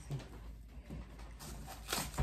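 Artificial leaf and flower stems rustling and scratching against a twig grapevine wreath as they are pushed into it, with a louder scratchy rustle near the end.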